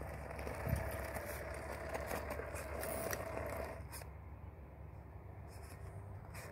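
Redcat Gen 8 RC crawler's electric motor and gears whining under load while it climbs rock, with its tyres clicking and scraping over the stones. The whine stops about four seconds in.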